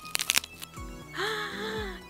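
Crisp wafer shell of a Choco Monaka Jumbo ice-cream sandwich, with its chocolate coating, snapped in half by hand: a quick run of sharp cracks in the first second.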